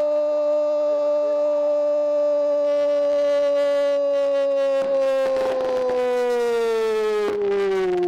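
A male football commentator's drawn-out goal cry, 'gooool', held as one long note with its pitch slowly sagging over the last few seconds.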